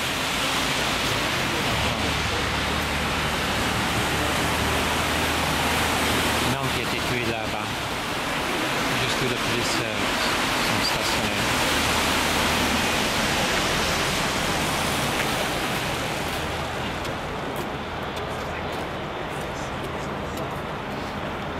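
Steady hiss of traffic on a wet street: car tyres on the wet road making an even rushing noise, easing slightly near the end.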